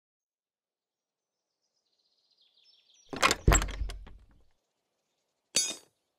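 Faint bird chirps, then a loud cluster of knocks with one heavy thud that dies away over about a second, and a short ringing metallic clank near the end.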